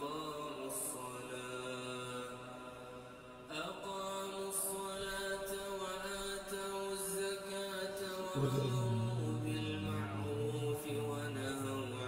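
A man's voice reciting the Qur'an in a slow melodic chant, holding long notes that glide between pitches. Past eight seconds it drops to a lower, louder note.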